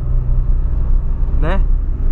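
Inside the cabin of a 2003 Ford Fiesta Supercharged (Zetec Rocam engine) while it drives, there is a steady low drone of engine and road noise.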